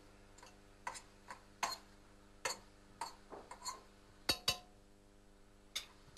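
A spoon clinking and scraping against a stainless steel pot while goat meat and onions are stirred as they brown: about ten light, uneven knocks, the loudest two close together a little past four seconds in.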